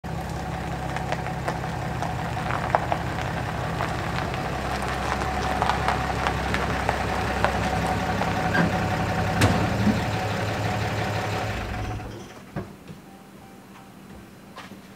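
A Ram pickup truck's engine running at low speed while the truck backs up and stops, then shutting off about twelve seconds in, with a single knock shortly after.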